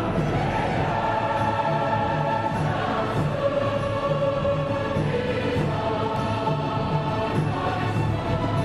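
Children's choir with adult voices singing in harmony, long held notes over a steady low pulse in the accompaniment.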